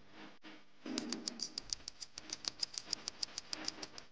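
A rapid, even run of light clicks, about eight a second, starting about a second in and stopping near the end, over faint low tones.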